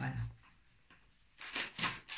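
After a single spoken word, two short bursts of rustling packaging about a second and a half in, as grocery items are handled.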